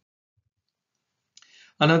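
Near silence for over a second, then a brief faint hiss, and a man's voice begins speaking near the end.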